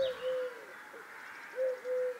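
Forest birds calling: a few short, low notes, each rising and falling, repeating at irregular intervals, with faint higher chirps behind.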